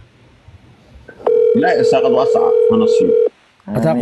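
A steady electronic tone sounds for about two seconds, starting just over a second in and cutting off cleanly, while a voice talks over it.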